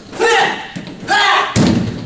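Two short loud yells, then a heavy thud about one and a half seconds in as a body is thrown down onto padded gym mats.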